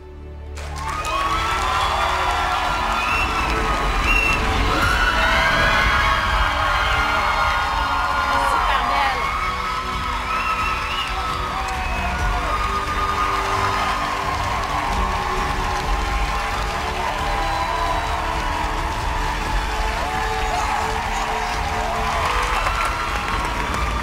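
Studio audience cheering, shouting and whooping. The sound swells within the first couple of seconds and stays loud throughout, with music playing underneath.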